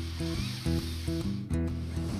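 Acoustic guitar picking single notes, a new one about every half second, in a pause between sung lines. A breathy hiss comes through the vocal microphone in the first half second or so.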